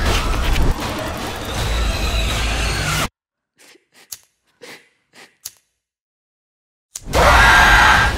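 Horror trailer score and sound design: a dense, loud build that cuts off abruptly about three seconds in, leaving near silence with a few faint short sounds, then a sudden loud hit about seven seconds in.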